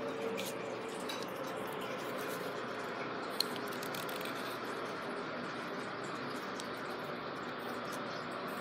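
Steady low background hiss of room noise with a single short click about three and a half seconds in.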